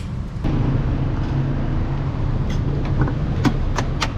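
Steady low hum of car engines in street traffic, with a few sharp clicks near the end as a car's rear door is opened.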